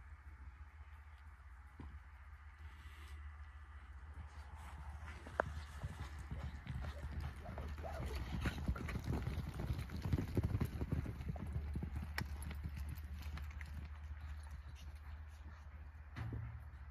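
Quarter horse mare's hooves on soft arena dirt, a scattered run of quick hoofbeats that picks up about five seconds in, is busiest and loudest in the middle, then thins out, over a steady low rumble.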